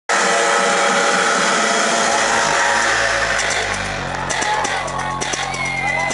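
Electronic dance music from a DJ set played loud over a club sound system: sustained synth chords, then from about three seconds in a fast ticking beat comes in, followed by a low bass line.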